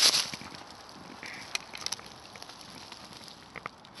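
Faint rustling and crackling of dry fallen leaves, with a short louder rustle at the very start and scattered small clicks after it.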